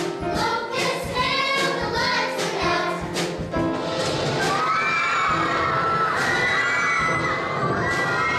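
A youth choir sings over musical accompaniment with a steady beat. From about four seconds in, long wavering high voices cry out over the music, a staged wail of lament from the cast.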